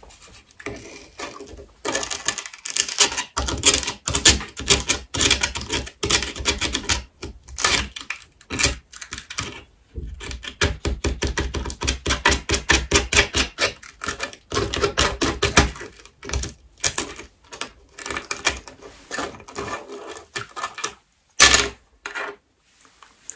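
Brittle dalgona sugar candy cracking as fingertips snap small pieces off against a tabletop. The crisp clicks come in rapid runs with short pauses, starting about two seconds in.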